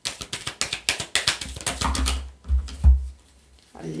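A deck of oracle cards shuffled by hand: a quick run of crisp card clicks and riffles for about three seconds, with a couple of dull thumps near the end as the deck is knocked together.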